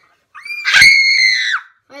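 A boy screams into the chest piece of a stethoscope: one loud, high-pitched scream of about a second and a half, starting a third of a second in, rising at the start and dropping away at the end.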